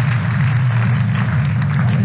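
Stadium crowd murmuring in the stands over a steady low hum.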